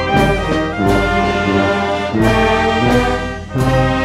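Background music played by a brass band, held chords of trumpets and trombones over a regular low bass beat.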